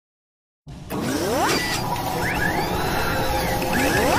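Silence, then about two-thirds of a second in, a loud sound-effect sting for an animated logo starts: dense mechanical whirring with sweeping rises and falls in pitch.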